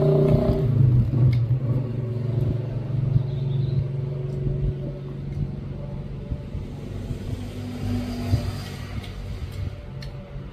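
A steady engine hum, loudest at the start and slowly fading, with a few faint clicks over it.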